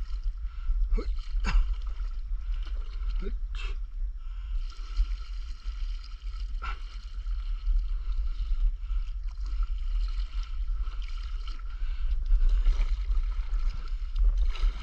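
Stand-up paddleboard gliding through water: paddle strokes and water washing against the board, with a steady low rumble underneath. A few sharp knocks come mostly in the first four seconds, with one more near the middle.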